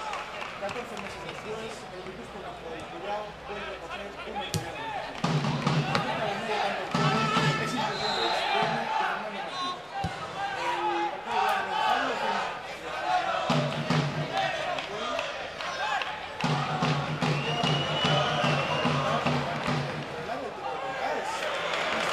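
Football stadium crowd: many voices shouting and calling at once, with scattered sharp knocks.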